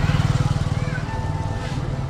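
A small engine running steadily nearby, a low rumble with a rapid even pulse.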